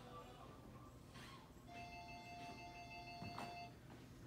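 A faint, steady pitched tone, like a chime or beep, held for about two seconds in the middle, with a brief click near its end.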